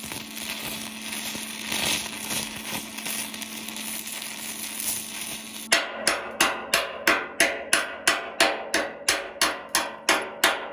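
Stick (rod) arc welding on galvanised steel: a steady crackling arc for the first five or six seconds. Then the arc stops and a hammer chips at the fresh weld, with sharp, evenly spaced taps about four a second, louder than the arc.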